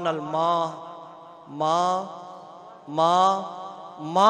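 A man's voice chanting through a microphone in three long, melodic, drawn-out phrases, each trailing off slowly before the next.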